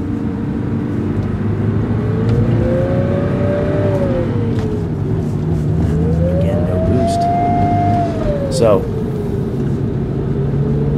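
Porsche 944 Turbo's turbocharger howling over the turbocharged four-cylinder engine under acceleration. The howl rises and falls in pitch twice with the revs. It comes from the compressor impeller with its fins broken off, spinning without making boost.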